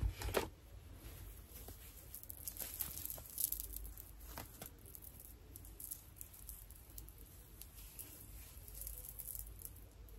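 Faint, scattered crackling and rustling of hands handling twisted natural hair, gathering the twists up into a bun, over a low steady room hum.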